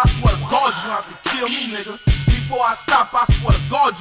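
Hip-hop song: the chorus rapped over a beat with pairs of deep kick-drum hits.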